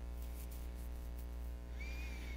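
Steady low electrical mains hum on the headset microphone line, with a few faint clicks in the first second and a short, faint high-pitched squeak near the end.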